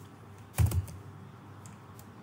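Computer keyboard keystrokes: a quick cluster of two or three key taps about half a second in, then a fainter single tap later.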